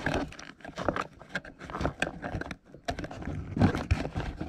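Irregular light clicks and scrapes of angled metal tweezers being worked under a small metal push clip on a plastic post, prying at it.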